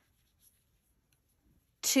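Near silence, with only a faint rub of yarn as two tails are pulled into a knot by hand.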